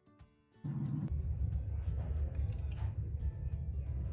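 Soft background guitar music, then, just over half a second in, a louder steady rough rumbling noise starts and keeps on: handling and scraping noise from clay being worked on the tabletop.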